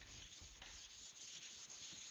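Faint rubbing of a sponge eraser wiping marker writing off a whiteboard.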